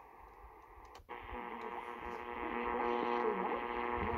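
Sony portable receiver on longwave hissing with static; about a second in it cuts out briefly as it is retuned, and a station comes in, louder, under a cluster of steady whistling interference tones, which the recordist puts down to the phone doing the recording.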